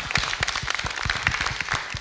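Studio audience applauding: many hands clapping together at a steady level.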